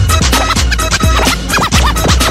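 Brazilian funk track with a steady kick drum about twice a second, with record scratching cut over it in the second half.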